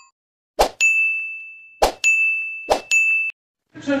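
Subscribe-and-bell animation sound effect: three clicks, each followed a moment later by a high, steady bell ding. The first ding rings for about a second, and the last is cut off short.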